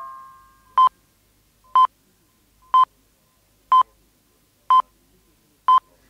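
Radio time signal: six short beeps of the same pitch, one each second, marking the full hour. At the start, the last note of a chime jingle fades out.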